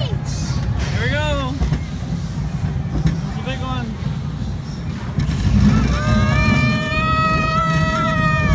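Roller coaster train running along its track with a steady low rumble, riders giving two short rising-and-falling whoops, then about six seconds in one long held scream.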